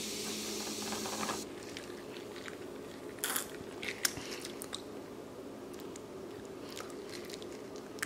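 Carbonated soda fizzing over ice in a glass, a high hiss that stops abruptly about a second and a half in. Then a few faint clicks and sipping sounds as the drink is sipped from the glass.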